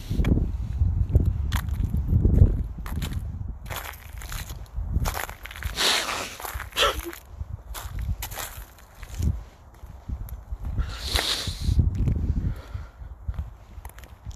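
Footsteps on burnt rubble and ash, with irregular scrapes and knocks of debris underfoot. A low rumble fills the first couple of seconds.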